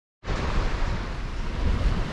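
Small sea waves washing onto a sandy beach, a steady rushing wash, with wind buffeting the microphone as a low rumble.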